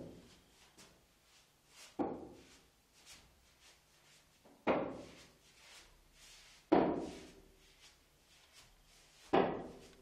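A walking stick knocked down on the floor with each slow step, four knocks about two to two and a half seconds apart.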